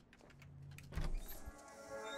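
Sound effect of a mechanical tally counter rolling over: a run of rapid clicks with a low hum, ending in a loud low thump about a second in, after which music starts.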